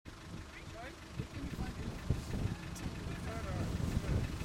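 Game-drive vehicle's engine idling with a low, steady rumble, under quiet, indistinct voices.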